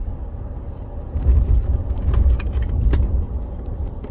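Low rumble inside a car's cabin, swelling from about a second in, with a few light clicks and rattles.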